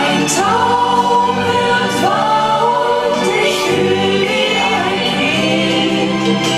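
A song sung by several voices, choir-like, over continuous backing music, with long held notes that slide between pitches.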